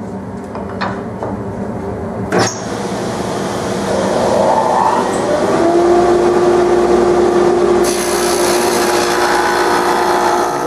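Table saw running a stacked dado head, cutting a quarter-inch-deep, three-quarter-inch-wide dado along a walnut rail. A sharp click comes a couple of seconds in, then the cutting noise builds and turns brighter near the end as the board feeds through.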